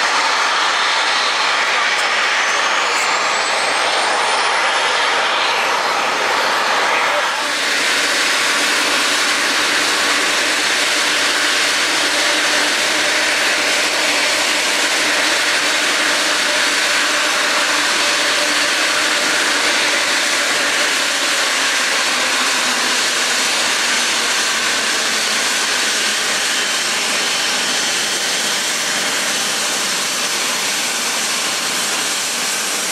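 Airbus A350-900's Rolls-Royce Trent XWB turbofan engines running at taxi power as the airliner rolls past: a steady, loud jet hiss and whine, with a thin high whine rising in pitch over the first several seconds.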